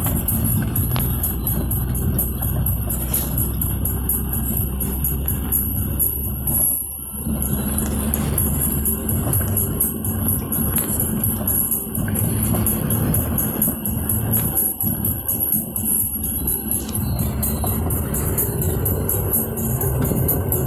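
Music playing on the vehicle's stereo with a steady beat, heard inside the cab of a moving vehicle over continuous engine and road rumble.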